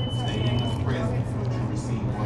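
People chewing mouthfuls of burger and sandwich, with faint voices in the background over a steady low hum; a thin high tone sounds for about the first second.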